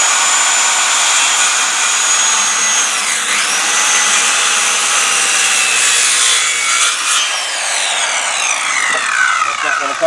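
Corded circular saw (Skilsaw) cutting into a treated timber, its high motor whine dipping under load about three seconds in. About seven seconds in the whine starts falling steadily as the blade winds down.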